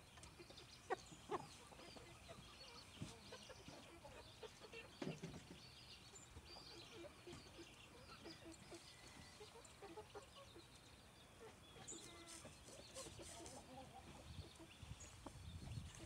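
Near silence: faint outdoor yard ambience with occasional soft clucks from caged roosters and a few light taps, the sharpest about a second in.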